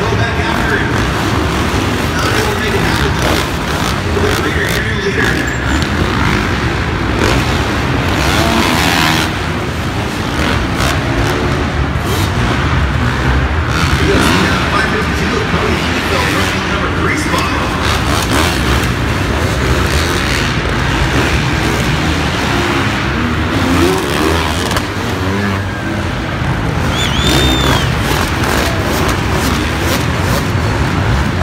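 450cc four-stroke motocross bikes racing around an indoor arena dirt track, their engines revving up and down as they circle the course, with a voice, likely the announcer's, mixed in.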